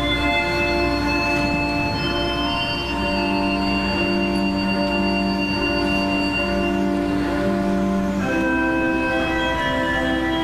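Church organ playing slow, sustained chords, with the harmony changing about three seconds in and again near the end.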